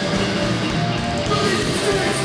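A hardcore punk band playing live and loud, with distorted electric guitars, bass and drums, the cymbals briefly dropping out about a second in.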